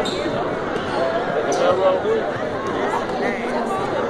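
Basketballs bouncing on a hardwood gym floor during team warm-up, with the players' voices and chatter echoing around the gym.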